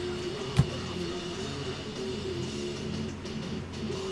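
Background music playing steadily, with one sharp knock about half a second in.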